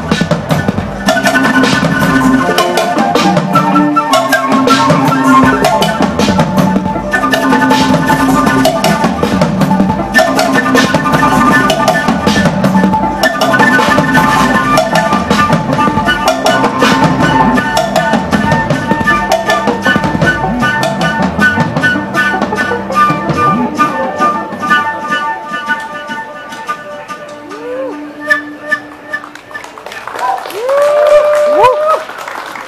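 Live flute and drum kit music with a steady beat, the flute playing a melody over the drums and a low repeating line. It thins out and fades over the last few seconds as the piece ends.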